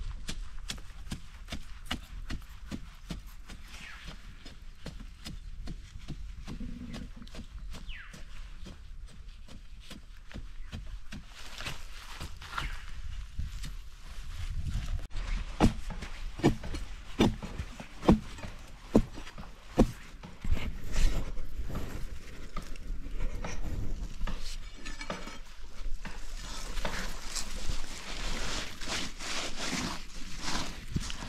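A hand digging tool striking and scraping into earth and roots. The strokes are uneven, with the sharpest, loudest strikes about halfway through, and rougher scraping of loose soil near the end.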